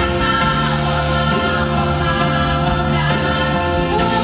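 Music: a choir singing held chords over instrumental accompaniment.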